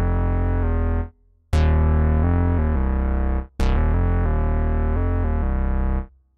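Synth bass preset 'Pure Pulse' in Native Instruments' Kontakt 7 Synths library, played in legato mode. Held notes step in pitch without new attacks, and each new phrase opens with a bright filter sweep that falls away. One phrase ends about a second in, a new one starts about a second and a half in, and the last one starts just after three and a half seconds.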